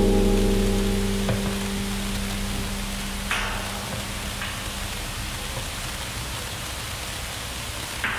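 Improvised music on a large metal cauldron and electronics: a pitched drone fades away over the first couple of seconds, leaving a steady hiss. A light knock comes about a second in and a sharper one about three seconds in.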